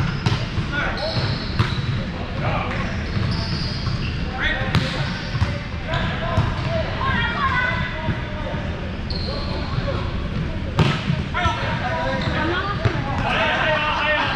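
Indoor volleyball play in a large, echoing gym. The ball is struck and hits the hardwood floor in sharp knocks, the loudest one a little before the end, among indistinct players' voices.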